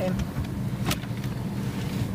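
Steady low hum of a car's engine running, heard inside the cabin, with one sharp click about a second in.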